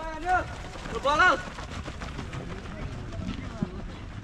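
Footsteps of a group of runners on dry dirt ground as they sprint away from a standing start, with two short shouts in the first second and a half, over a low rumble.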